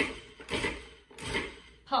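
Small food processor pulsed three times in short bursts, its motor and blade whirring through a dry mix of flour, ground pistachios and sugar.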